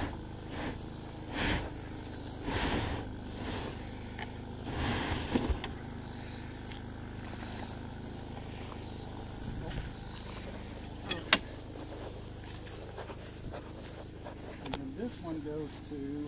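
Popup camper's front bed pulled out by hand, scraping and rustling its vinyl canvas in several rough bursts over the first five seconds, then a single sharp click about eleven seconds in. A generator hums steadily underneath.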